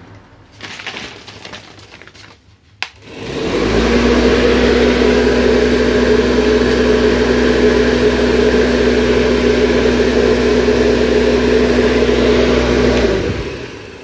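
An electric fan runs after a click about three seconds in: a steady motor hum under loud rushing air, which dies away near the end.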